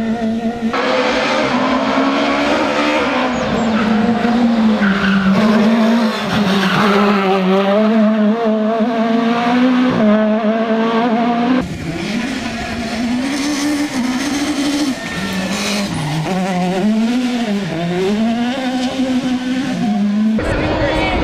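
Peugeot 306 Maxi rally car engine at full song, its pitch climbing and dropping again and again with gear changes and lifts off the throttle, with tyre noise on the tarmac. The sound changes abruptly about two-thirds of the way in, where a second pass begins.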